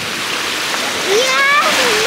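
Steady rush of waves washing onto a sandy Baltic Sea beach. About a second in, a voice joins with a drawn-out sound that rises, then holds.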